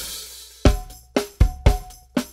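A DW drum kit with Zildjian cymbals played in a funk groove. A cymbal rings and fades at the start, then kick and snare hits come every quarter to half second from just over half a second in.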